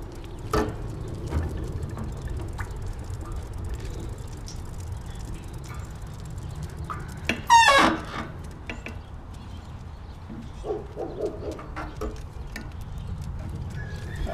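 Low, steady rumble with light clicks and footfalls while walking leashed huskies on a paved road. One loud, high-pitched animal call comes about seven and a half seconds in, and a few short, lower calls follow around eleven seconds.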